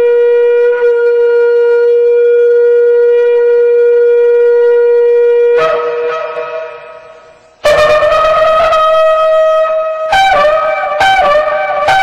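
Shofar blown in one long steady blast that jumps up in pitch near its end and fades away. A second, higher blast follows, then a run of short broken notes.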